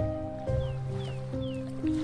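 Slow solo piano music, a new note or chord sounding about every half second, over a faint wash of ocean waves. Three short falling chirps sound in the middle.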